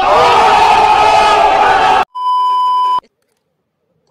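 Loud, distorted shouting with crowd noise for about two seconds, cutting off suddenly. It is followed by a steady electronic beep about a second long.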